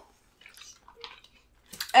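A few faint, short, wet eating sounds in an otherwise quiet pause: mouth noises while chewing and light touches of cutlery in a bowl.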